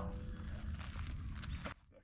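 Shuffling footsteps on a dirt yard over a steady low rumble, cutting off suddenly near the end.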